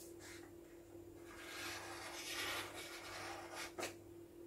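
Felt-tip marker writing a small letter u on a hand-held sheet of paper: a faint scratchy rub of the tip, loudest just past halfway, with a brief tap near the end.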